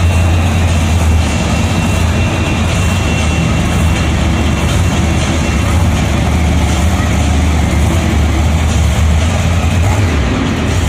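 Monster truck engines running with a steady, deep low rumble, the nearest being Bigfoot's as it rolls slowly at low throttle.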